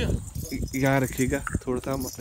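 Small metal ornaments on a goat's beaded decorative collar jingling as the goat moves and is handled.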